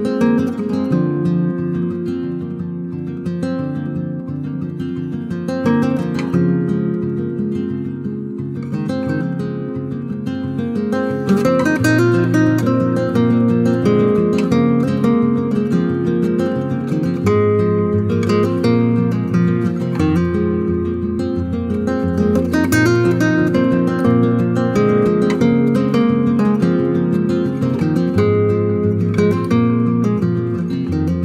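Background music: a plucked and strummed acoustic guitar piece.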